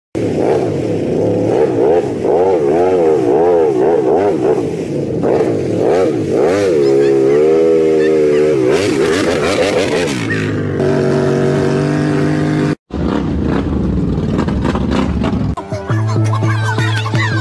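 Big-tyre mud ATV engine revving up and down over and over as the machine churns through deep mud, then holding a steadier pitch for a few seconds.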